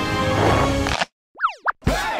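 Background music that stops abruptly about halfway, then a cartoon sound effect: quick sliding pitch glides that fall steeply and then shoot back up.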